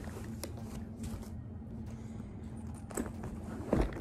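Soft handling sounds of a leather backpack being opened and packed: a few light rustles and knocks, with a louder thump near the end, over a steady low hum.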